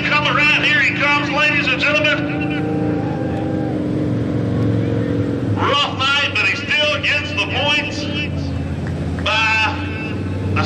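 Dirt late model race car engine running steadily at low speed, its pitch shifting slightly a few seconds in, with a man's voice talking over it for much of the time.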